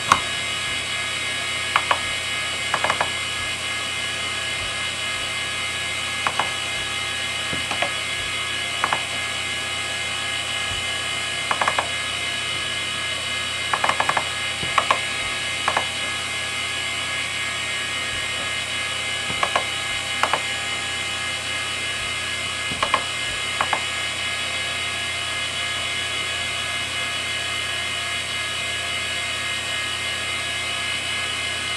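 Western Digital Caviar 22100 IDE hard drive running with a steady whine, its heads seeking in sharp clicks that come singly and in short clusters at irregular intervals. The clicks stop about three-quarters of the way through, leaving only the whine.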